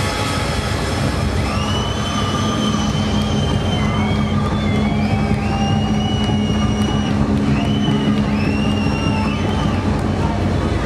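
Hardstyle music from a club sound system over loud crowd noise in a big hall, in a breakdown: one low synth note held steady, with a high melody of gliding tones that rise, hold and fall, entering about a second and a half in.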